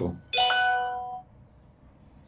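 A two-note ding-dong chime: a short higher note, then a lower note held for just under a second.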